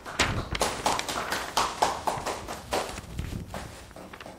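A large sheet of flip-chart paper rustling and crackling in irregular bursts as it is handed over and folded.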